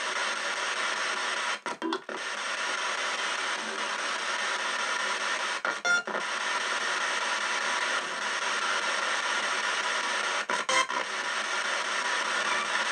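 Ghost box, a radio sweeping rapidly through stations, giving out a steady hiss of static. The hiss breaks off briefly three times, about two, six and eleven seconds in.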